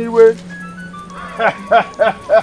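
A man's voice singing a slow chant over background music: a held note fades just after the start, then short sung syllables come in about a second and a half in.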